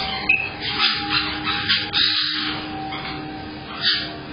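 Caique parrots giving a series of short, shrill squawks, about half a dozen calls in quick succession with a gap near the end before one more.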